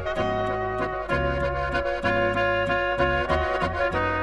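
Slovenian Oberkrainer-style folk band playing an instrumental passage: a brass-led melody with accordion over a bass that alternates between notes and an even chord beat.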